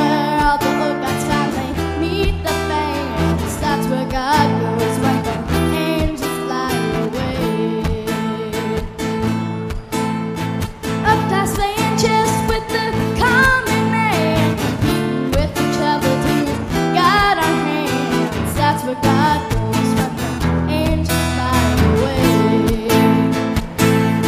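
A young girl singing a song into a microphone, accompanied by a strummed acoustic guitar.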